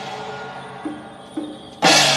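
Chinese temple-troupe percussion music: low sustained notes that step in pitch, with a couple of light hits, then just before the end a loud crash of large hand cymbals and gongs as the percussion section comes in.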